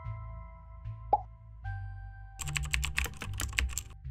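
Outro music with a steady bass line and held tones. About a second in comes a single pop sound effect, then from about two and a half seconds a quick run of keyboard-typing clicks, a sound effect for text being typed into a comment box.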